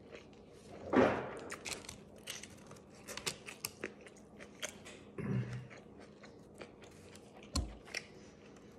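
Close-up chewing of a mouthful of flatbread sandwich with lettuce and peppers, mouth closed: a steady run of small wet clicks and smacks. A short, loud rush of breath-like noise comes about a second in, a brief low hum a little after the middle, and a low thump near the end.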